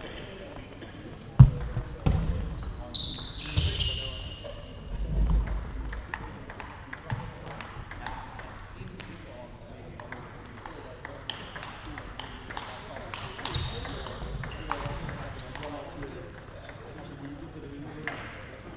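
Voices talking in a sports hall, with scattered sharp clicks of table tennis balls from play at other tables. There is a single loud knock about a second and a half in.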